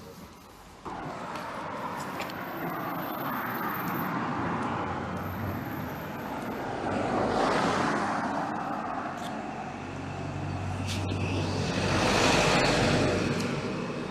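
Road traffic: cars driving past on a bridge road over a steady rushing background, with one car passing about seven seconds in and a louder one, its engine hum audible, passing near the end.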